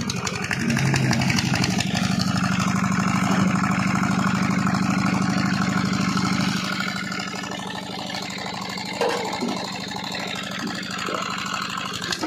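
Tubewell pump engine running steadily, a low even drone that drops somewhat in level after about six and a half seconds, with water splashing at the discharge pipe.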